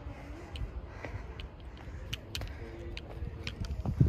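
A low rumble of wind buffeting a handheld phone's microphone, with scattered light clicks and a single sharp handling thump at the very end.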